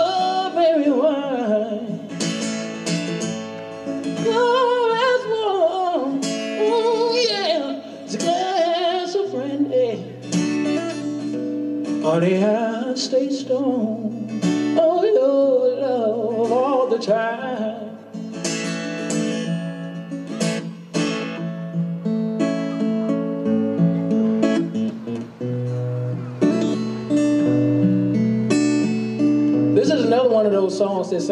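Live solo acoustic set: a man singing into a microphone while strumming an acoustic guitar. For a stretch in the second half the singing drops out and the guitar carries on alone before the voice returns.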